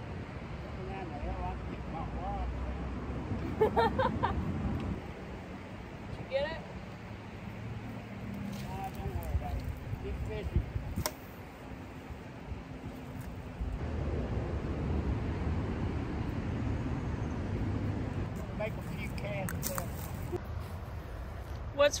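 Low, steady outdoor rumble on a riverbank, with scattered quiet talk and a short laugh about four seconds in, and a couple of sharp clicks about halfway through.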